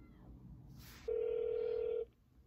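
Phone ringing tone heard through a smartphone's speakerphone on an outgoing call: a brief hiss just under a second in, then a steady tone held for about a second that cuts off suddenly.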